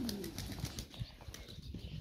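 Domestic pigeons cooing faintly, one low coo right at the start, over faint footsteps on gravel.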